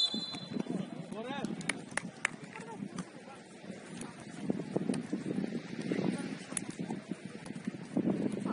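Seven-a-side football match on artificial turf: players calling to each other over a patter of running footsteps, with a few sharp knocks about two seconds in. A referee's whistle blast cuts off right at the start.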